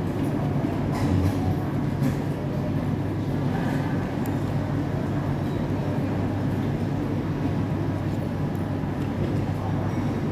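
Steady low hum of a busy indoor food court, with a few light clicks of utensils against a bowl.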